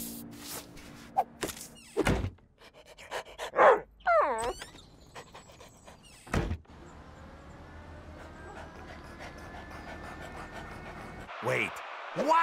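Cartoon sound effects: scattered clicks and knocks, a loud thud about two seconds in, a short breathy vocal sound near four seconds, and a second thud a little after six seconds. After that comes a faint steady tone slowly rising in pitch.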